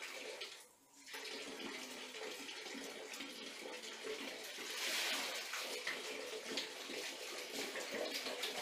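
Water splashing and sloshing in a plastic tub as a toddler's hands slap and paddle in it, dropping away briefly about a second in and growing louder about five seconds in.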